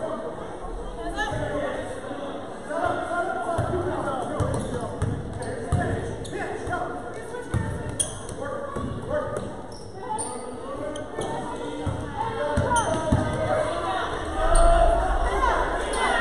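A basketball dribbled on an indoor gym floor, bouncing at irregular intervals, mixed with voices of players and spectators.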